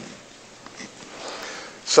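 A man breathing and sniffing close to the microphone, with a sharper breath near the end.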